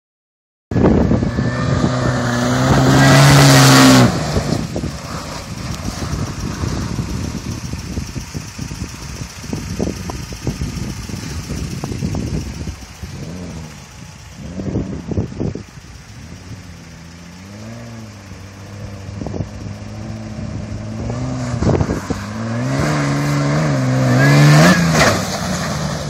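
Toyota FJ Cruiser's 4.0 L V6 engine revving hard on a dirt track, rising and falling in pitch. It is loudest for a few seconds near the start and again as the truck comes close near the end, and fainter while it is farther off in between.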